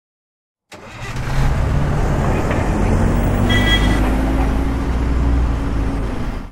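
A motor vehicle engine running, starting about a second in, with a steady low hum and a tone that rises slowly in pitch.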